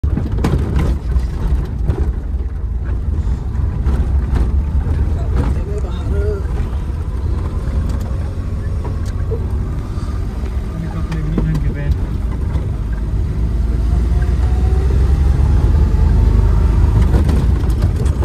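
Maruti 800's small three-cylinder petrol engine heard from inside the cabin while driving, a steady low rumble with knocks and rattles over the rough road in the first few seconds. Near the end the engine pitch rises and the sound grows louder as the car speeds up.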